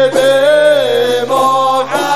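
Sholawat, Arabic devotional chanting in praise of the Prophet Muhammad, sung in long held notes with the melody bending in pitch over a steady low note.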